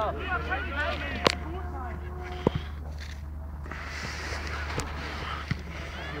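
Players shouting during a football match, with a sharp thud of the ball being kicked about a second in and a smaller knock a second later, over a steady low wind rumble on the microphone.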